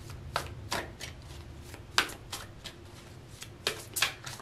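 A tarot deck being shuffled by hand: a handful of sharp card snaps and slaps at irregular intervals, two close together near the end.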